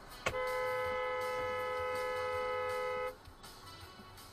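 A car horn sounding one long steady blast of about three seconds, starting just after a sharp click and cutting off abruptly.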